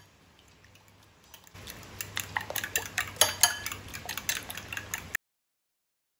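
A metal spoon beating raw eggs in a bowl: quick, repeated clinks of the spoon against the bowl's sides, starting about a second and a half in and stopping abruptly about five seconds in.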